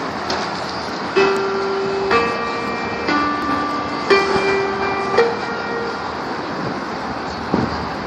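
Five steady starting notes sounded one after another, each held about a second and stepping up and down in pitch: the choir's starting pitches being given before an a cappella song. Then only outdoor background hubbub with a soft knock near the end.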